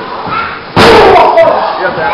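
One loud, sudden slam from the wrestling brawl about three quarters of a second in, with voices shouting before and after it.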